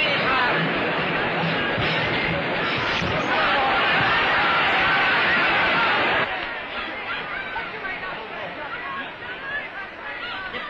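Boxing crowd shouting and cheering in a dense, loud roar of many voices, which drops to a quieter murmur about six seconds in.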